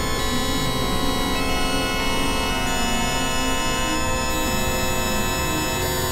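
Experimental synthesizer drone music: many sustained tones held at once across low and high pitches, a few of them stepping to new pitches, over a thick low rumble.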